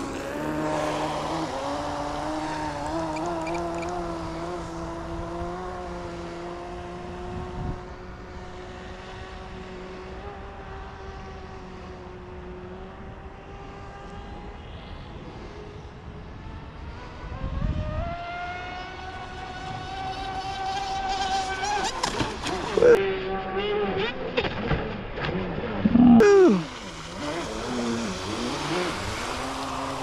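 Electric RC speedboat's brushless motor whining at full throttle on a speed run, its pitch sagging slightly and fading as it runs away across the water. From about 17 s it climbs in pitch and grows louder, then swoops up and down with loud peaks as the boat turns and passes close.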